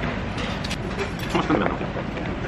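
Tableware clatter at a meal: a quick run of sharp clicks as a metal spoon and chopsticks knock against dishes about half a second in, and a louder clatter with a brief voice sound around one and a half seconds, over a steady low hum.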